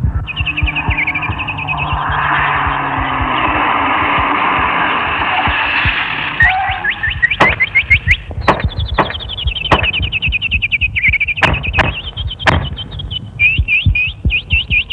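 Film background score without dialogue. A low held chord opens it, under a fast repeating figure of short, falling high chirps. A swelling hiss builds in the first half, and sharp percussive hits are scattered through the second half.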